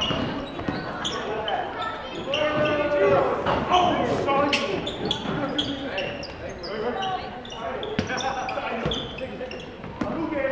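Basketball bouncing on a hardwood gym floor during live play, with players' shouts and short high sneaker squeaks, all echoing in the gym.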